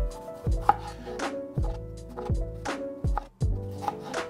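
Kitchen knife slicing a red bell pepper into rings on a white cutting board: a series of crisp cuts, each ending in a knock of the blade on the board, about two a second.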